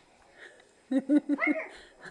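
A woman laughing in a quick run of short bursts starting about a second in, ending on a higher rising-and-falling note.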